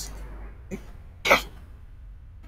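A man coughs once, a single short cough just past a second in.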